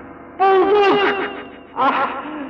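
Film dialogue: a voice speaking in two short phrases, the first starting about half a second in and the second near the end.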